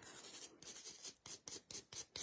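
Stiff nail brush scrubbing quickly back and forth over a sugared gel nail, a faint rasp at several strokes a second, clearing away the loose extra glitter while the fused glitter stays put.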